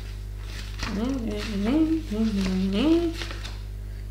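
A woman humming softly to herself, a few rising and falling notes lasting about two seconds, starting about a second in, over a steady low background hum.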